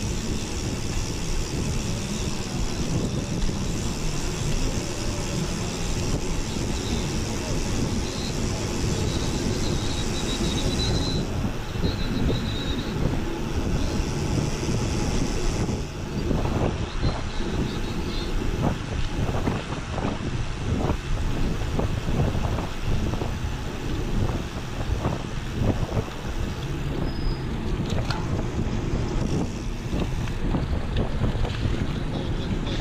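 Wind buffeting the microphone with tyre rumble from a mountain bike rolling along a paved path. In the second half, scattered short clicks and rattles from the bike run through it.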